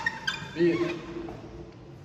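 A man's voice speaking briefly in the first second, then a quieter second of room sound.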